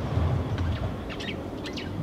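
Several short, high bird chirps scattered through a pause, over a steady low background rumble.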